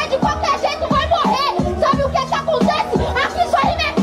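A freestyle MC rapping in Portuguese into a handheld microphone over a hip-hop beat with a bass line and a steady kick drum.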